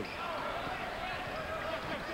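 A basketball being dribbled on a hardwood court, over a steady background of arena noise.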